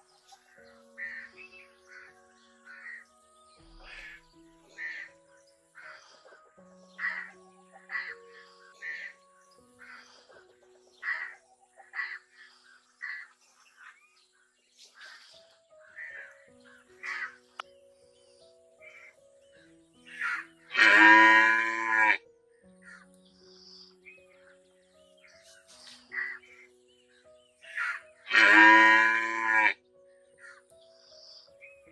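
A calf mooing twice, with two long, loud calls about seven seconds apart, the second near the end. Background music and many short calls run underneath.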